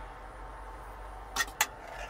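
Two quick metal clinks about a second and a half in, steel serving tongs knocking against a steel kadhai while curry is dished out, over a low steady hum.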